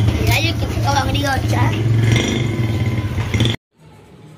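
A loud, steady, low engine-like hum with voices over it, which cuts off abruptly about three and a half seconds in.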